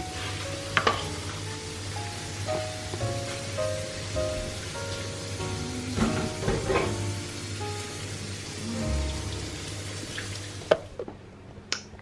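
Meat sizzling in a frying pan, a steady hiss with background music playing a simple melody over it. The sizzle cuts off suddenly near the end.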